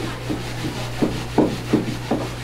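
Soft scraping and a few irregular knocks, about three in the second half, as balloon bread is handled at the mouth of a fired oven, over a steady low hum.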